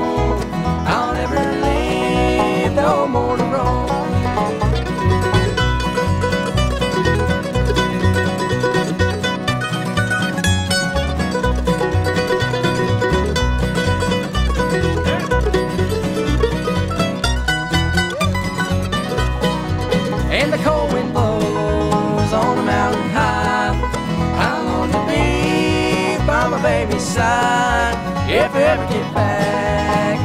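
Bluegrass band playing an instrumental break: mandolin taking the lead over banjo, guitar and upright bass, with the bass keeping a steady beat.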